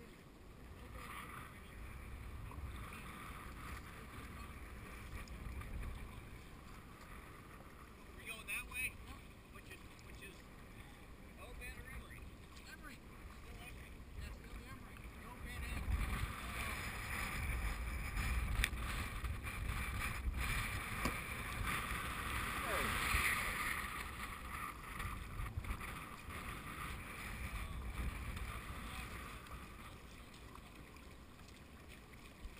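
River water rushing and splashing around a whitewater kayak on a swollen river, with paddle strokes and wind buffeting the microphone; the water noise grows louder about halfway through.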